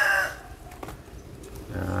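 A rooster crowing: the long held final note of its crow runs on and ends about a quarter of a second in.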